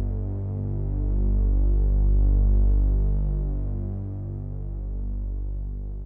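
Low, sustained synthesizer drone with a slow throbbing pulse, swelling and fading in loudness, then cut off abruptly at the very end.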